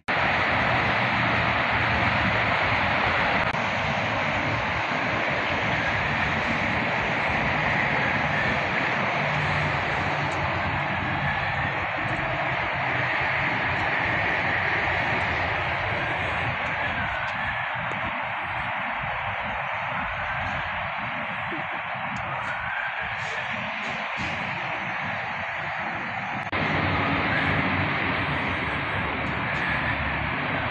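Steady outdoor background noise: a constant rushing hiss with some low buffeting, stepping slightly louder near the end.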